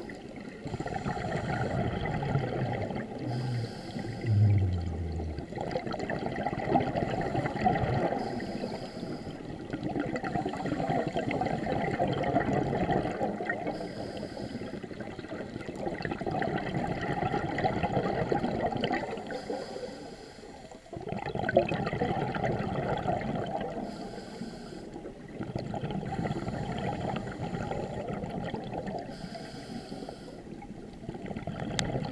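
Underwater sound of a scuba dive: a diver's regulator breathing and bubbles, a rushing, bubbling noise that swells and fades every several seconds with each breath. A short low hum falls in pitch a few seconds in.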